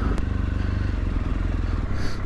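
BMW R1200GSA boxer-twin engine running at low revs as the motorcycle pulls away at low speed, with a single sharp click shortly after the start.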